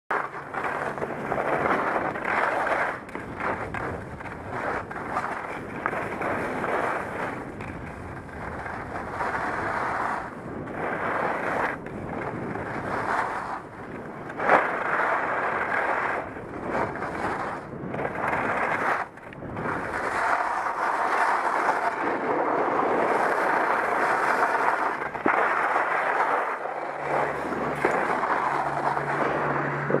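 Edges sliding and scraping over hard-packed groomed snow on a fast downhill run, a continuous rough hiss that surges and dips with each turn and bump.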